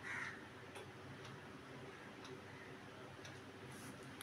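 Quiet room tone with a low steady hum and a few faint, light ticks as a clear plastic protractor is handled and shifted on a paper drawing sheet.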